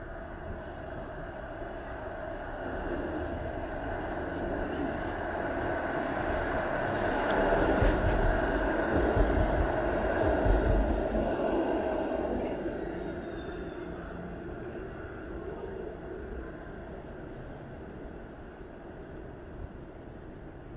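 A TTC Flexity low-floor streetcar passing close by, its wheels running on the rails with a deep rumble and a steady hum from its drive. The sound builds over several seconds, is loudest about halfway through, and fades away.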